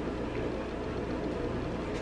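Steady low background hum of room tone, with no distinct sounds on top.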